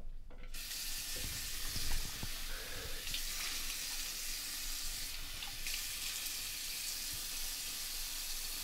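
A bathroom sink tap turned on about half a second in and running steadily into the basin, with a few splashes in the first few seconds.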